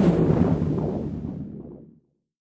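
An editing transition sound effect: a low rumbling swell, loudest at the start, that dies away over about two seconds and cuts off into silence.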